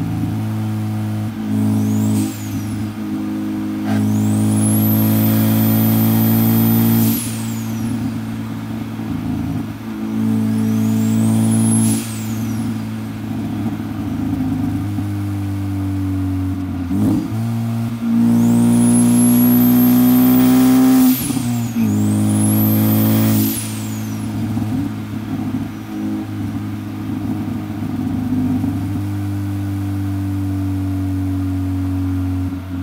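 Turbocharged four-cylinder of a Ford Focus ST with a Garrett G25-550 turbo, pulling hard in about five bursts of acceleration. Each burst brings a rising, high-pitched turbo whistle that falls away as the throttle lifts. The engine note dips briefly at each gear change between pulls.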